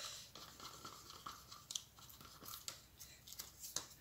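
Faint scrapes and a few light taps of wooden craft sticks stirring thick acrylic pouring paint in plastic cups.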